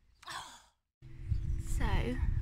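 A woman's short breathy sigh. After a cut, a low rumble of wind on the microphone, and she starts speaking near the end.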